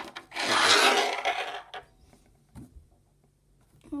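Rough scraping rub lasting about a second and a half as a small rock is put down and pushed across a hard table top, followed by a short, quieter knock.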